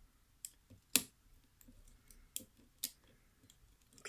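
Steel lock pick and tension wrench working the pins inside a pin-tumbler lock cylinder: scattered light, sharp metallic clicks, the loudest about a second in.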